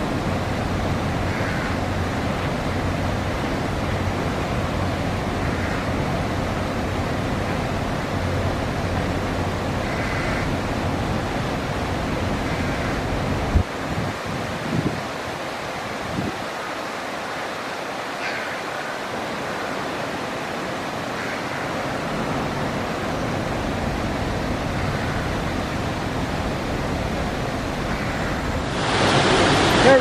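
Steady rushing noise of water in a canal lock, with a single knock about halfway through. Near the end a louder rush of churning water comes in.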